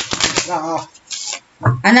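A deck of tarot cards being shuffled by hand: a quick run of sharp card clicks in the first half second.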